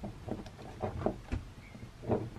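Soft, irregular clicks and taps of a plastic action figure being handled and posed by hand.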